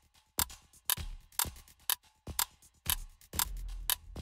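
Quiz countdown timer sound effect: sharp clock-like ticks, about two a second, over a low bass pulse that grows steadier near the end.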